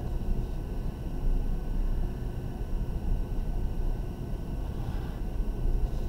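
Steady low rumble of background room noise, with no distinct strokes, taps or knocks.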